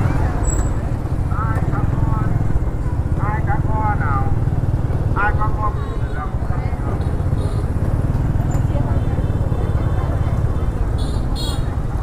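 Busy market street ambience: motorbikes passing with a steady low rumble, and brief snatches of people talking now and then in the first half.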